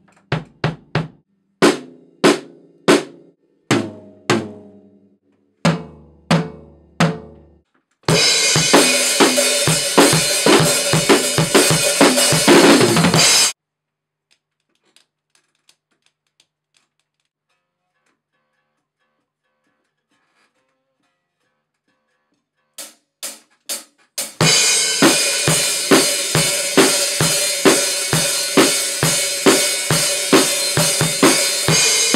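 Acoustic drum kit with Zildjian ZBT cymbals. It opens with single drum hits one at a time, each ringing out and getting lower in pitch down to a deep boom, then a few seconds of full-kit playing with crashing cymbals that stops suddenly. After a pause of several seconds, four quick clicks count in and a full rock beat with cymbals starts and keeps going.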